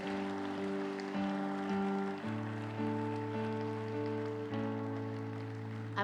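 Soft sustained keyboard chords, changing about two seconds in and again about four and a half seconds in, with light clapping underneath.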